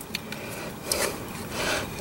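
Metal mounting plate being slid over a swamp cooler motor's housing: quiet rubbing and scraping of metal on metal, swelling briefly twice.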